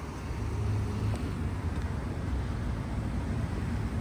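Steady low rumble with a faint hiss of background noise and no distinct events.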